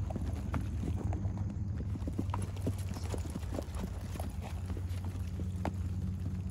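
Hooves of Icelandic horses striking grass turf at a quick gait: a rapid, uneven run of dull hoofbeats, several a second, over a steady low rumble.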